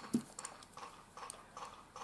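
Faint, irregular small clicks and ticks of jewelry pliers gripping and bending thin wire on a pearl, with metal chain shifting against the pliers.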